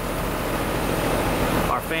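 American Standard Heritage 13 outdoor condensing unit running steadily in cooling mode: the condenser fan blows air over a steady low hum from the compressor. The system is running healthy, though the outdoor fan motor draws right at its rated amps and is the one thing to watch.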